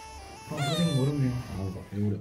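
A man's drawn-out vocal sound starting about half a second in, its pitch sliding down and wavering, over faint steady background music.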